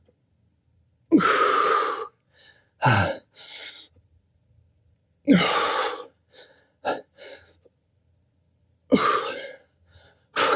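A man breathing hard through exercise reps: four or five strong, forceful exhalations and gasps a few seconds apart, with short puffs of breath between them.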